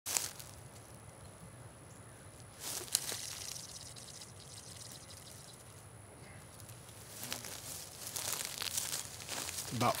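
Fly line paying off the lip of a wooden Cuban yoyo handline reel during a cast, heard as a rustling hiss that swells for a couple of seconds near the end. There is a sharp click about three seconds in.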